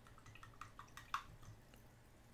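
Near silence with a few faint, short clicks, one a little louder just past the middle.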